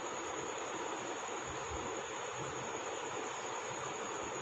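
Steady low background hiss with a constant thin, high-pitched whine running through it, with no distinct strokes or events.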